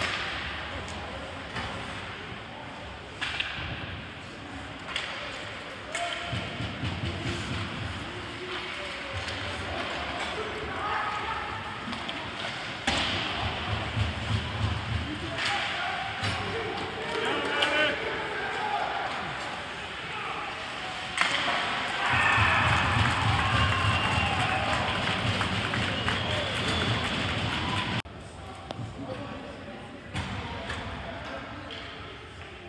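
Ice hockey game heard from rinkside stands: sharp knocks of sticks and puck against the boards and ice, amid shouting from players and spectators. The shouting swells into a loud stretch over several seconds near the end, then drops off suddenly.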